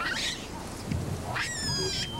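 Baboon calls: a short scratchy burst near the start, then a shrill cry about one and a half seconds in that falls slightly in pitch.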